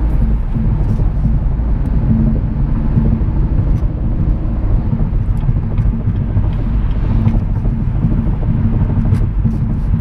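Inside the cabin of a 2016 Cadillac ATS-V coupe cruising at highway speed on winter tires: a steady low rumble of tyre and road noise mixed with the drone of its twin-turbo V6.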